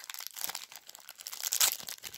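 Paper packaging being handled: quick, irregular crinkling and rustling, loudest about one and a half seconds in.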